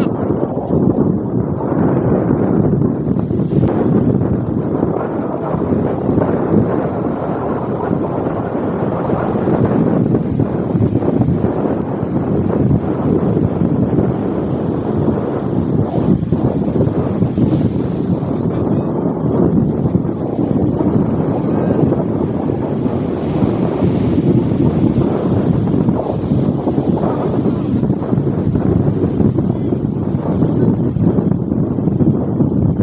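Loud wind buffeting the microphone over the steady wash of surf breaking on the beach.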